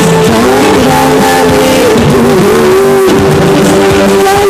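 Loud music with held melodic notes and small pitch slides, one note held steadily through the last second or so.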